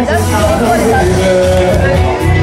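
Live pop vocal performance over loud dance music through a club PA: a singer's amplified voice over a pulsing bass beat.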